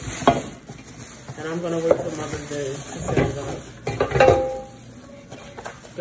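Plastic wrapping crinkling and rustling as the parts of an electric hotpot are unwrapped, with knocks and clinks of the metal pot and grill parts being handled.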